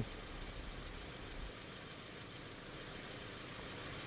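Faint, steady outdoor background noise from an open microphone, with a low rumble that drops away about a second and a half in.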